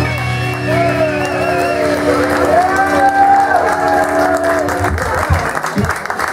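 Live rock band holding out a final electric-guitar chord as a song ends, with the crowd cheering over it. The chord stops about five seconds in and the audience applauds.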